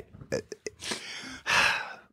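A person's mouth sounds and breathing in a pause between sentences: a few short mouth clicks, then two noisy breaths, the second louder.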